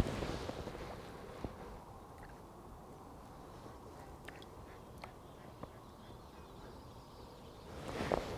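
Faint, steady outdoor background noise at a riverbank, with a few faint clicks scattered through it and a slight rise in noise near the end.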